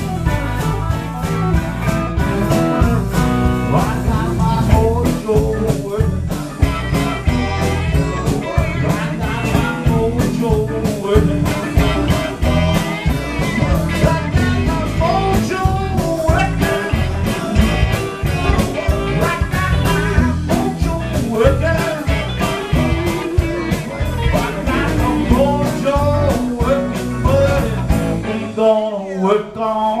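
Live electric blues band jamming: electric and slide guitars, Hammond organ and drum kit, with blues harmonica played into a cupped microphone. Near the end the band cuts out briefly for a break.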